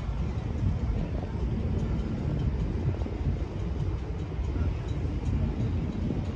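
Wind buffeting the phone's microphone: a steady, gusty low rumble.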